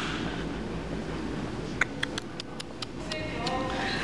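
Store background sound: a steady low hum, with a quick run of light clicks about halfway through and faint distant voices near the end.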